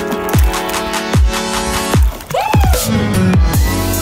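Electronic background music: a sustained synth chord over deep kick drums that slide down in pitch about every 0.8 s. About two seconds in it breaks off briefly, then comes back with a synth line that bends up and down in pitch.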